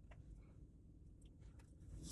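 Near silence with a few faint ticks: small origami paper stars being picked out of a glass jar by hand.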